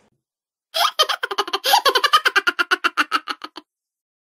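A boy's hearty laughter, voiced by a narrator: a long run of quick, even 'ha-ha-ha' beats, about seven a second. It starts about a second in and dies away near the end.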